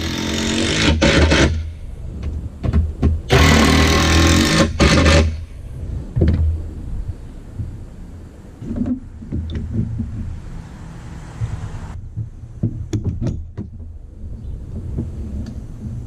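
DeWalt cordless impact driver driving deck screws into wooden deck boards in two bursts of about two seconds each, the first at the start and the second about three seconds in. Scattered clicks and knocks follow, over a steady low hum.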